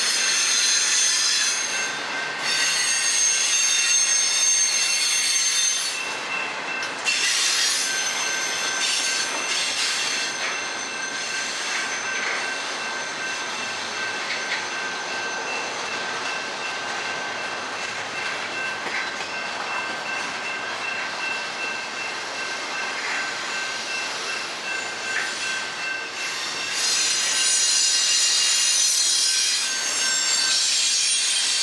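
Double-stack intermodal container cars of a freight train rolling past on steel wheels, a steady rolling rumble with a sustained high wheel squeal over it. Louder in the first few seconds and again near the end.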